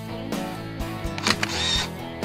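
Background music with a steady beat, with a camera shutter sound effect about a second and a quarter in: a quick cluster of clicks followed by a brief burst of noise.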